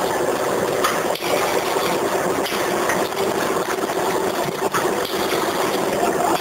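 Potato-chips pouch packing machine running: a steady mechanical hum with a constant low tone, broken by light clicks and knocks at irregular intervals.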